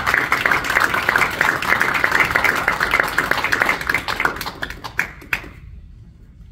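Audience applauding, with individual claps heard, that thins to a few last claps and stops about five and a half seconds in.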